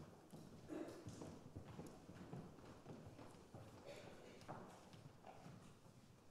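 Faint, irregular footsteps and light knocks on a wooden stage as performers shuffle into place, with a little low murmuring.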